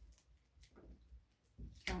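Faint rustling of a paper poster being handled on a closet door, with a short sharp crackle near the end as it is pulled at.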